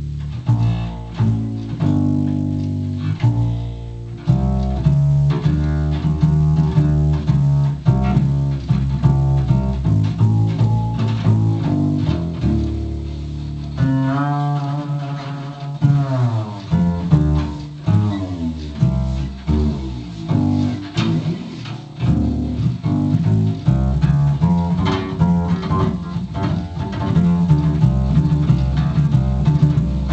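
Upright bass (double bass) played by a first-time player: a run of separate low notes, with pitch slides up and down about halfway through.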